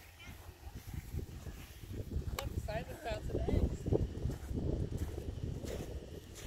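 A toddler's brief babbling vocal sounds a little before the middle, over a steady low rumble.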